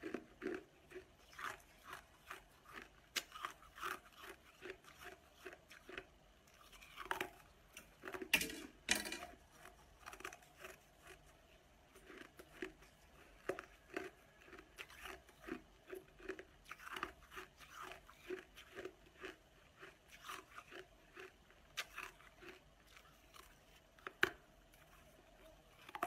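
Frozen ice being bitten and chewed close to the microphone: a run of short crunches, with a few louder, sharp cracks about eight to nine seconds in.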